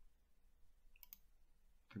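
Two quick computer mouse clicks close together about a second in, against near silence.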